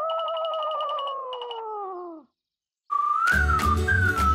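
Cartoon comedy sound effect: a wobbling, whistle-like tone that slides slowly downward with a fast rattling flutter, for about two seconds. After a short silence, a bright music jingle starts near the end.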